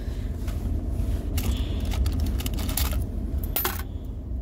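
Loose coins clinking against each other and a metal tin as fingers rummage through them, a few scattered sharp clicks, over a steady low rumble.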